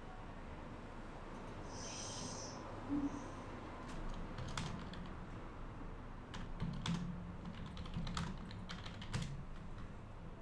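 Computer keyboard typing: irregular key clicks, the sharpest from about four to nine seconds in.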